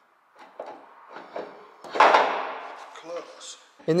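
Hand tools and metal parts on the tractor's steering box: a few light knocks and clinks, then a louder scraping clatter about two seconds in that dies away over a second.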